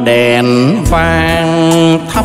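A Vietnamese bolero song played live by a band. A held melody note slides up and back down about two-thirds of a second in, over a steady bass line.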